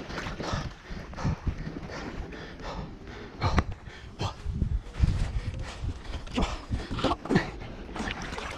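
Irregular splashing and sloshing of muddy river water as a sheep stuck in the mud struggles while being held and pulled, with several heavy low thumps and knocks, the strongest about halfway through.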